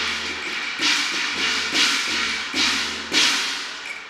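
Cantonese opera percussion: cymbals struck about five times, roughly a second apart, each crash starting sharply and fading before the next.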